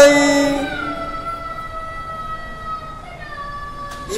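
Harmonium holding a sustained chord between sung lines of kirtan, fading steadily, with small shifts in pitch about a second in and again near the end.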